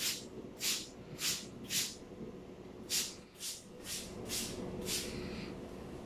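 Plastic hand-trigger spray bottle squirting disinfectant solution onto a floor, nine quick trigger pulls, each a short hiss: four in a row, a pause of about a second, then five more.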